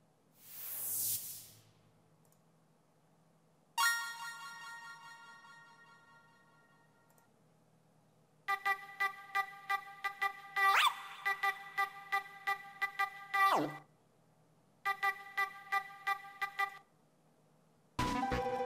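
Electronic effects loop samples previewed one after another in BandLab's loop browser. First a rising swell of noise, then a chime that rings and fades over a few seconds. Then a fast stuttering pitched loop at about four pulses a second, with sudden downward pitch drops, which stops and later starts again briefly.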